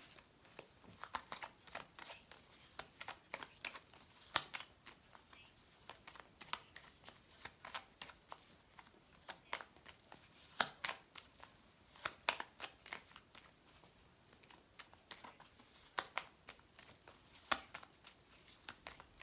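A deck of fortune-telling cards being shuffled by hand: quiet, irregular flicks and slides of card edges against each other, with a few sharper snaps.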